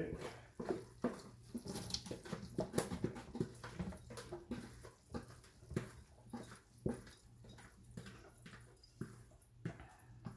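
Scattered light clicks and taps of kitchen utensils and containers being handled at a counter during food preparation, with the loudest tap about seven seconds in, over a steady low hum.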